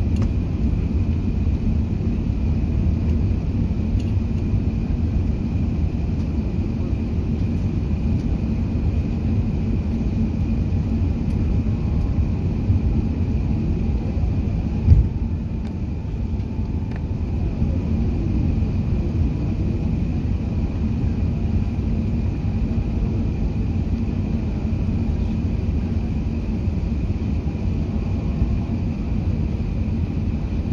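Steady low rumble of an Airbus A380's engines and airflow heard inside the cabin during the descent to land, with one short thump about halfway through.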